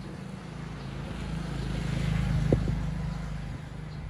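A motor vehicle's engine passing by, its low hum growing louder to a peak about halfway and then fading, with one short click about two and a half seconds in.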